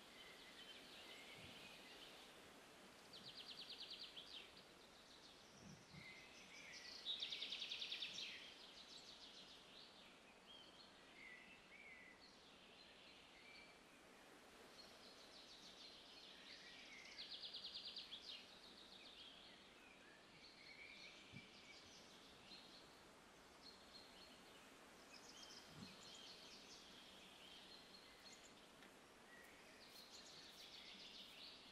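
Faint woodland birdsong: scattered chirps and calls over a quiet outdoor hush, with three rapid trills, the loudest about seven seconds in.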